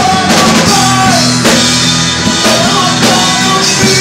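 A live amateur band playing a rock-style worship song: drum kit beating under strummed acoustic guitar, electric guitars and keyboard, all played loud in a reverberant room.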